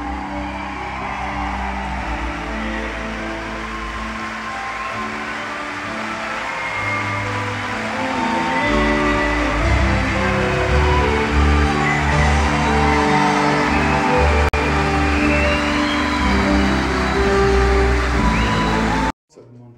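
A live theatre band plays curtain-call music, growing louder with a stronger bass about eight seconds in, over a steady wash of audience applause.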